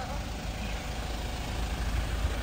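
A parked passenger van's engine idling, a steady low rumble.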